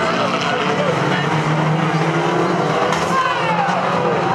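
Several 2-litre banger racing cars' engines running and revving together as the pack races round a turn. Their pitches overlap and rise and fall, with a few falling glides near the end.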